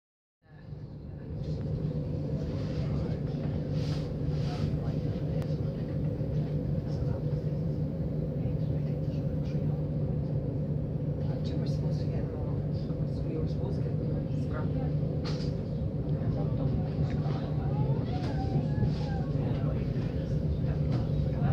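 Cabin sound of a Thameslink Class 700 electric multiple unit in motion: a steady rumble of wheels on track with a constant low hum, fading in over the first second or so, with occasional light clicks and rattles.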